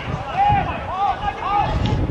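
People shouting on a football pitch: three short, rising-and-falling calls about half a second apart, over wind rumble on the microphone.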